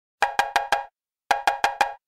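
Intro theme music opening with a pitched percussion figure: four quick, evenly spaced ringing strikes, played twice with a short gap between.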